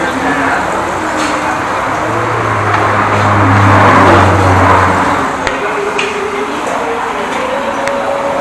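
Road traffic passing close by: a vehicle's engine hum and tyre noise swell to a peak midway and fade away, over indistinct voices, with a few light clicks in the second half.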